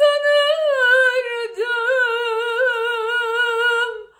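A woman's voice singing unaccompanied, holding one long wordless note that wavers with vibrato, with a short slide down in pitch about a second and a half in; the note stops near the end.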